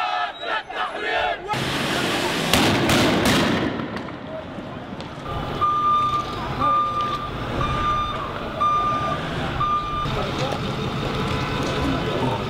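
A crowd chanting, then a loud burst of noise with a few sharp cracks. Then an armoured police vehicle's warning beeper sounds five short, steady beeps about a second apart over the rumble of its engine.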